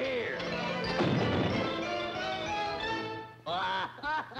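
Orchestral cartoon score playing, with a crash about a second in: a cartoon sound effect of a body smashing through a wooden door.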